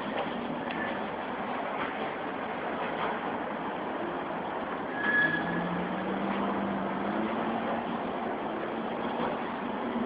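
Steady rushing background noise from traffic, with a vehicle's low engine hum starting about five seconds in and holding for a few seconds.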